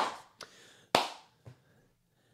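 One sharp smack about a second in, with a couple of much fainter taps around it.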